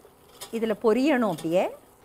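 Only speech: a woman speaking a few words in Tamil, with a short pause before and after.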